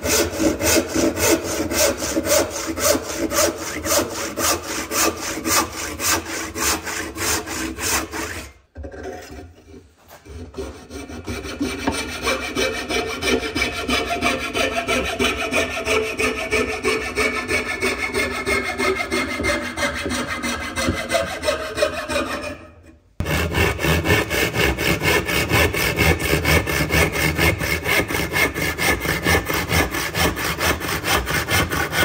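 Hardwood being cut with hand saws. First a hand saw cuts in steady rhythmic strokes and stops about nine seconds in. After a brief pause, a coping saw's thin blade rasps through the waste of the tenon with a smoother, faintly ringing sound. About 23 seconds in, the sound cuts off abruptly and rhythmic hand-saw strokes start again at the joint.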